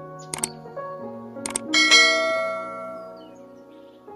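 Two sharp clicks about a second apart, the second followed straight away by a bright bell ding that rings out and fades over a second and a half, over soft background music. These are the sound effects of a subscribe-button and notification-bell animation.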